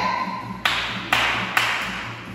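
Three sharp hand claps, about half a second apart, each with a short echo.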